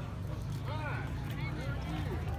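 Voices of people talking a short way off, over a steady low rumble.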